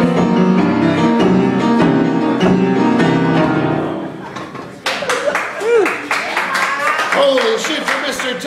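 Boogie-woogie piano playing, its last notes dying away about four seconds in. The audience then breaks into clapping and whooping shouts.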